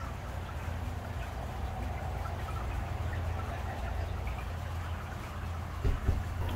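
Water running down the glass face of a tall wall fountain, a soft even wash, over a steady low rumble.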